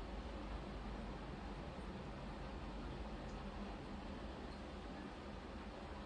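Quiet room tone: a steady low hiss with a faint low hum, and no distinct sounds.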